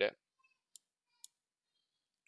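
Two faint computer mouse clicks about half a second apart.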